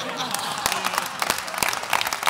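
Applause from a group of seated people clapping, beginning about a third of a second in and continuing as a dense patter of many hands, with a voice underneath.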